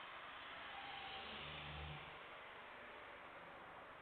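Faint, steady rushing noise of a distant Boeing 747 freighter's jet engines at low thrust as it lines up on the runway, with a brief low hum about a second and a half in.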